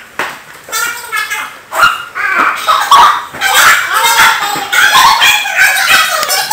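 High-pitched voices of young people squealing and talking excitedly, quieter at first and loud and continuous from about two seconds in.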